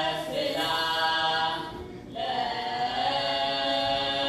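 Ethiopian Orthodox youth choir chanting a wereb hymn together in long, held phrases, with a short break between phrases just before two seconds in.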